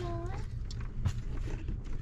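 Steady low rumble of a car heard from inside the cabin, with a couple of faint clicks about a second in.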